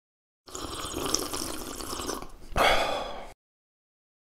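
Liquid splashing and pouring, heard in two stretches, the second louder, stopping abruptly after about three seconds.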